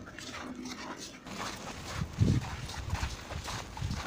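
Footsteps crunching through a thin layer of fresh snow on a pavement, with a brief louder low sound about two seconds in.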